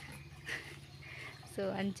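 A quiet pause with one faint, short sound about half a second in, then a woman's voice starts talking near the end.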